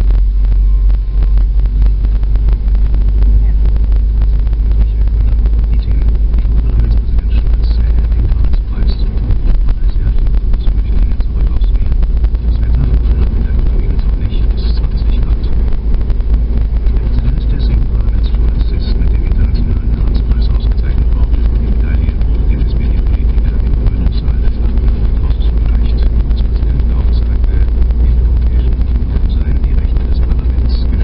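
Steady, loud low rumble of a car on the move heard from inside the cabin: engine, tyre and wind noise picked up by a dashboard camera.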